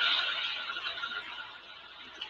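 Hiss from a played-back video recording, with a faint steady whine, fading away over two seconds.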